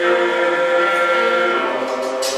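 Gospel vocal group singing in harmony, holding a long sustained chord whose notes shift near the end.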